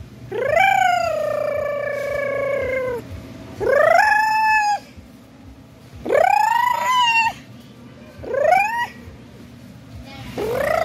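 A child's voice making high-pitched wailing calls to scare people, four in all. Each call swoops up at the start. The first is held for about two and a half seconds, and the last is short.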